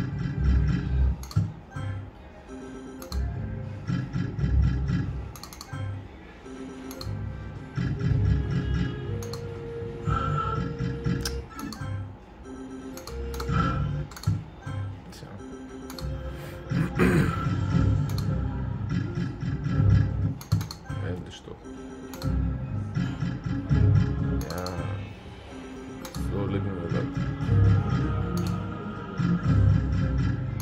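Novoline Book of Ra Classic slot machine running its free-game spins: the machine's electronic tones and jingles, with frequent short clicks as the reels stop and wins are tallied.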